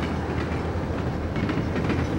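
Subway train running along the track: a steady noise with a low hum and faint clicks.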